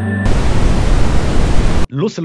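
A loud burst of even static hiss cuts in sharply about a quarter second in, replacing background music. It lasts about a second and a half, then stops abruptly as a man's voice begins.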